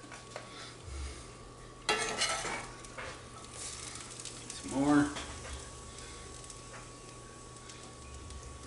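A metal spoon scraping and clinking in a cast iron skillet as sautéed sweet potato filling is scooped out, starting suddenly about two seconds in. A brief pitched sound, the loudest moment, comes about five seconds in.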